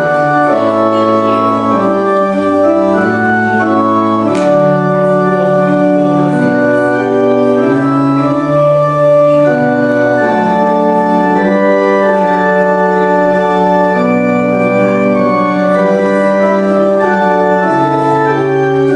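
Organ playing slow music in held chords, each chord sustained without fading and moving to the next every second or two.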